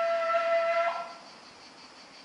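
A flute holding one long low note, with a brief higher note just before the playing stops about a second in.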